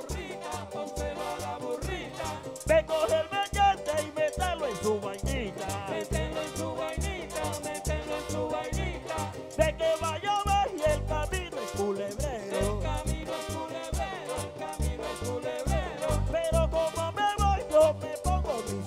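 Live Colombian accordion band with brass, timbales and a metal guache shaker playing an up-tempo dance number with a steady, driving drum beat.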